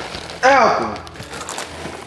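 Dry Cinnamon Toast Crunch cereal being tipped from the box into the mouth and crunched. The loudest sound is a short vocal exclamation with a falling pitch, about half a second in.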